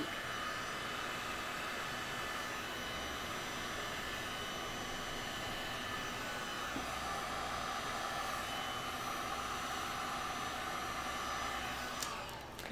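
Handheld heat gun blowing a steady stream of hot air, with a faint steady whine in its fan noise, used to push white epoxy resin outward into wave lacing.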